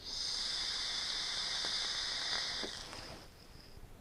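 Long draw on a tube-style e-cigarette: a steady hiss of air pulled through the tank's airflow and over the firing coil, holding for about two and a half seconds and then fading away.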